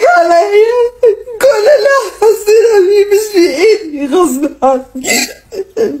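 A woman talking in a high, wavering voice that slides up and down in pitch, with whimpering, close to crying.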